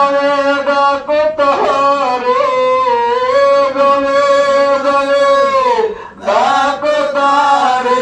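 A single male voice chanting an Islamic devotional milad melody without accompaniment. He runs through short bending notes, holds one long note for about three seconds, breaks off briefly near the end and picks up again.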